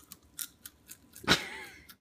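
Mouth-close chewing of crunchy popcorn: a string of short, sharp crunches a few tenths of a second apart, with one louder knock-like noise a little past halfway.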